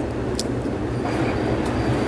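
Steady hiss with a low, even hum: the room tone and noise floor of a deposition recording.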